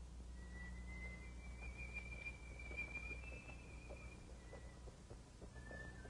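A person whistling faintly: one thin high note that drifts slowly upward for about four seconds, then shorter notes near the end. Underneath are the steady hum of old film sound and faint, irregular clicks.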